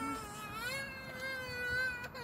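A high voice holding one long sung note, wavering slightly in pitch.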